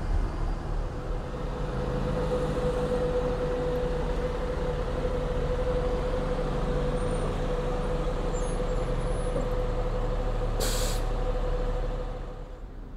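Transit bus idling at a stop: a steady engine rumble with a constant tone over it. About three-quarters of the way through comes a short hiss of the air brakes.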